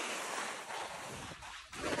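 Skis scraping over firm, rain-washed snow, a steady hiss that dips briefly about a second and a half in.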